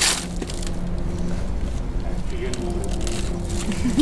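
A short, sharp crack right at the start as a buried witchcraft container is broken open, followed by quiet handling and scraping in the dirt over a steady low hum.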